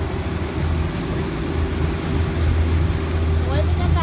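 A small boat's motor running steadily at cruising speed, a constant low hum, with wind and water rushing past the open hull.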